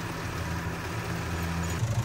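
Massey Ferguson tractor engine running at a steady speed, a constant low drone that cuts off abruptly just before the end.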